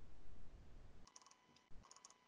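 Quiet handling noise: a faint low rustle, then a few soft clicks about a second in and again near the end, from surgical instruments being handled.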